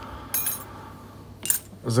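Light metallic clinks and a short rustle of small steel parts being handled, with one sharp click about one and a half seconds in.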